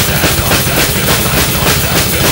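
Drum kit played fast in a heavy metal song: rapid, even bass drum strokes under regular cymbal and snare hits.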